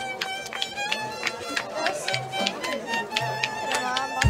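Live folk music: a fiddle playing a tune over a rhythmically strummed string instrument.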